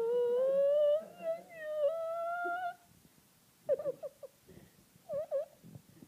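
A dog whining in one long, drawn-out tone that rises slowly in pitch, breaks briefly near two seconds in and stops near three seconds. Two short whimpers follow, about four and five seconds in.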